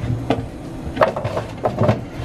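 Pieces of raw sweet potato set down by hand on a metal baking sheet, making about four light knocks and taps, with a steady low hum underneath.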